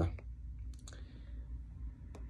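A few soft clicks, one near the start and a couple just under a second in, over a low steady hum.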